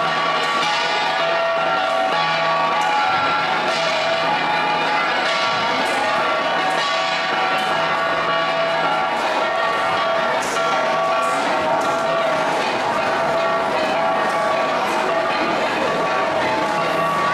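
An ensemble of gangsa, flat bronze gongs, beaten steadily, their metallic ringing tones overlapping without a break.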